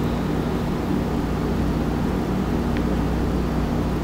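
Steady low hum of a large warehouse store's background noise, with no distinct event standing out.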